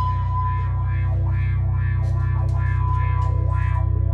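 Live doom metal band: heavily distorted electric guitar and bass guitar holding a low, droning note, with a steady held tone ringing above it.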